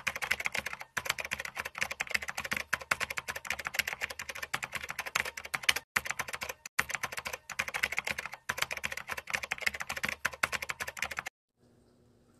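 Computer keyboard typing sound effect: rapid key clicks with a few brief breaks, stopping about a second before the end.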